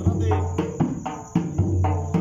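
Dhol drum beating a rhythm of sharp strokes and deep booms under a voice singing a qasida, with a steady high cricket chirr behind.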